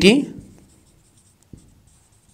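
Marker pen writing on a whiteboard: faint, scattered scratching strokes, with a short tap about a second and a half in.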